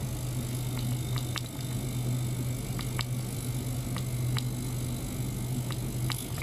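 Small ultrasonic cleaner running: its transducer gives a steady low mains-frequency buzz, with scattered sharp little ticks at irregular moments.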